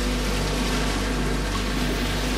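Even rushing water noise, like surf, over a low steady drone, with a faint held note from a soft background music track.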